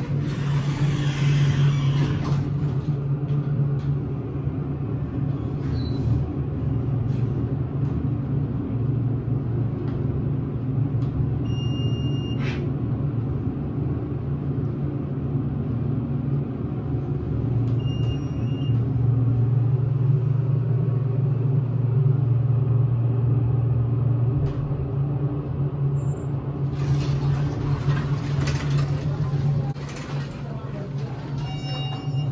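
Hydraulic elevator running, with a steady low hum throughout. A short electronic beep sounds twice, about six seconds apart.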